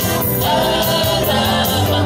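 Live band with a group of singers singing together in chorus over keyboard, guitar, bass and a steady beat.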